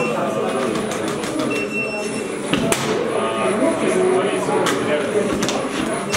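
Background chatter of several voices in a hall, with a few sharp clicks scattered through it.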